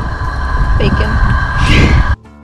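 Heavy wind rumble on the microphone with a steady high hum underneath, and brief bits of voice.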